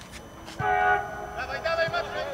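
Football players shouting on the pitch: one short held call about half a second in, then more shouted words near the end.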